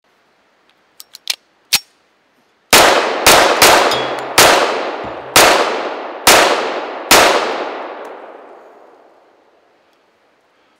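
Colt Model 1911 .45 ACP pistol being handled with a few small clicks, then fired seven times at an uneven pace, each shot with a long echoing tail that dies away after the last.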